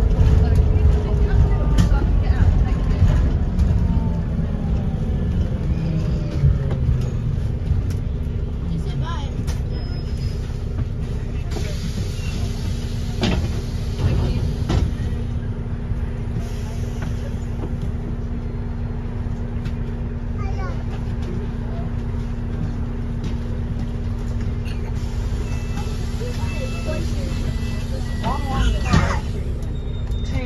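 Inside a New Routemaster diesel-electric hybrid bus on the move: a low rumble with a whine that falls in pitch over the first few seconds as the bus slows, then a steady drone from about halfway through. A couple of short knocks come near the middle.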